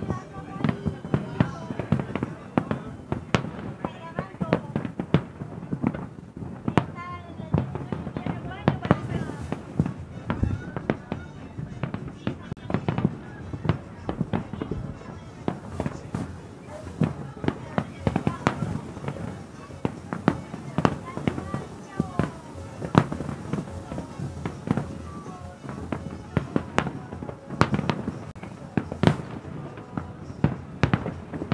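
Fireworks display: aerial shells bursting in a continuous barrage of sharp bangs and crackles, several a second, with no pause.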